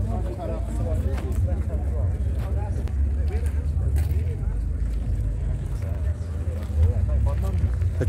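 People talking in the background, several voices in conversation, over a steady low rumble.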